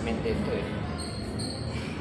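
Gym hall noise: dull low thumps with voices in the background, and a brief high squeak or tone in the second half.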